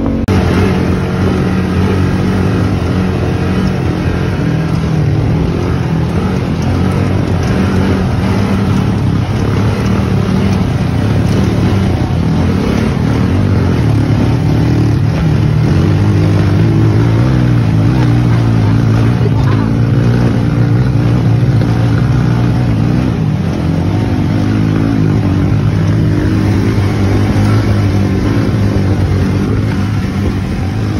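Side-by-side UTV engine running under varying throttle while driving a rough dirt trail, heard from inside the open cab with road and wind noise.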